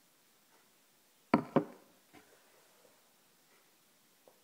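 Two sharp knocks a quarter second apart, about a second and a half in, then a faint click: a glass beer chalice being set down on a hard surface.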